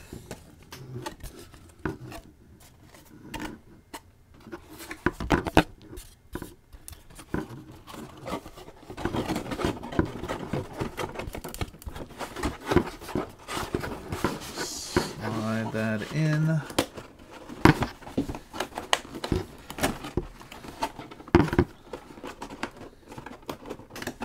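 Stiff printed board pieces of a pop-up diorama being handled and slotted together: irregular scrapes, clicks and light knocks as panels slide in and their tabs are pushed down into place.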